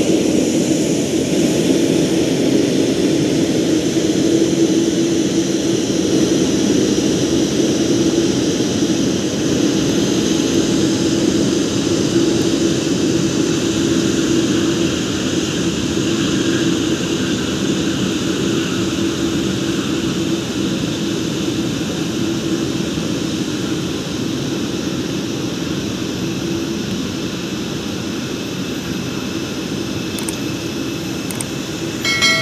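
Boeing 787-8 Dreamliner's jet engines running at taxi power: a steady whine over a low hum that slowly fades as the airliner taxis away.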